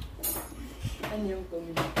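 A metal ladle clinking against a bowl of waffle batter: one clink just after the start and another near the end, with a brief bit of speech between them.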